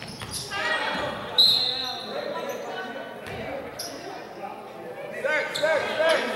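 Basketball game on a hardwood court in a large gym: a ball bouncing, with shouting voices and a loud, short, high-pitched squeak about a second and a half in.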